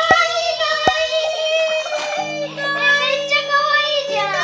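Background music: plucked guitar under a high, sustained sung melody, with the bass notes changing about halfway through.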